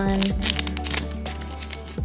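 Foil trading-card booster pack crinkling and crackling as it is worked open by hand along a top that was not cut all the way through, over background music.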